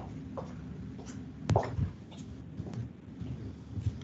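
Steady low rumble and hiss of an open teleconference audio line in a pause between speakers, with a sharp click and a few faint short sounds, the clearest about one and a half seconds in.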